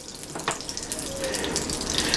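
Melted butter sizzling in a hot nonstick electric skillet: a steady crackling hiss of many tiny pops, with a single sharper click about half a second in.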